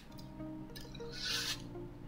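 Chalk scratching on a chalkboard, a short rasp strongest about a second and a half in, over faint background music.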